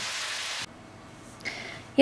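A steady hiss that cuts off abruptly less than a second in, leaving quiet room tone with one faint short sound about a second and a half in.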